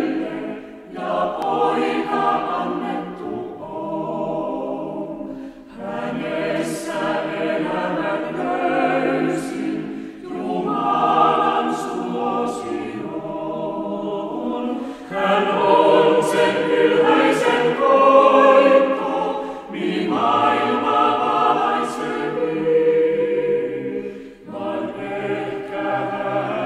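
Chamber choir singing a Finnish Christmas song in several voices, in phrases of about four to five seconds, each followed by a brief breath pause.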